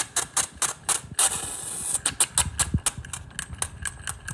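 Tabletop model steam engine running, its piston and flywheel making a fast, even clicking of about nine strokes a second. About a second in, a short hiss of steam cuts across it.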